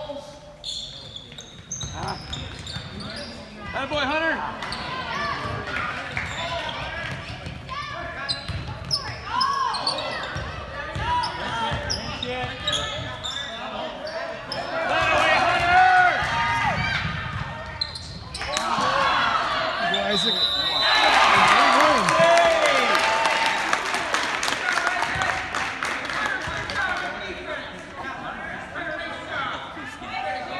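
Basketball game on a hardwood gym floor: the ball dribbling and bouncing, sneakers squeaking, and indistinct voices of players and spectators echoing in the hall. About twenty seconds in a referee's whistle blows briefly, and the noise grows loudest just after.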